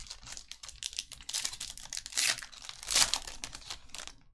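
Foil wrapper of a Topps Museum Collection baseball card pack crinkling as it is torn open and the cards are pulled out. It is a dense run of crackles that starts abruptly, is loudest about two and three seconds in, and stops right at the end.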